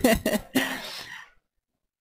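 A commentator clearing their throat close to the microphone, a short rough vocal noise. After a bit over a second the sound drops to near silence.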